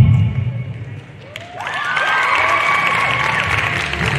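Bass-heavy music dies away in the first second. From about a second and a half in, an audience cheers with high whoops and shouts over applause.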